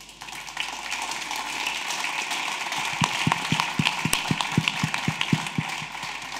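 Audience applauding. From about three seconds in, one pair of hands claps close by at about four claps a second.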